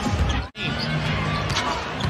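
Live basketball game sound on a hardwood court: a ball dribbling, with arena music and crowd noise underneath. A brief dropout about half a second in marks the cut between two highlights.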